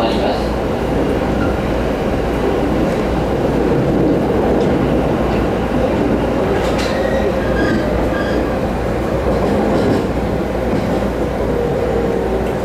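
Running noise heard inside a Rinkai Line commuter train car (TWR 70-000 series) moving at speed: a steady rumble of wheels on rail with a low hum. A few short clicks from the rails come through.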